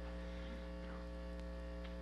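Steady electrical mains hum in the recording, a low hum carrying a ladder of higher overtones, unchanging throughout.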